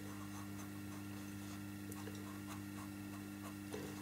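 Pastel pencil drawing on paper: faint, soft scratching in many short strokes.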